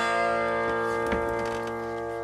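A homemade box-bodied resonator guitar (a cigar-box-style "dobro") lets a chord ring out after its last plucks, the metal cone sustaining the notes as they slowly fade. There are faint touches of string noise about a second in.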